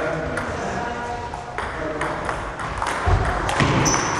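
Table tennis rally: a celluloid ball clicking off the bats and the table, a string of sharp ticks about two a second.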